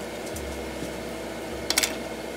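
A knife slicing open a baked potato on a plate, faint over a steady low hum. Near the end there is a short, sharp clatter as the knife is set down on the wooden cutting board.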